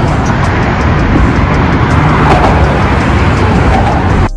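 Steady road traffic noise from cars on the bridge's roadway below, with wind rumbling unevenly on the phone's microphone.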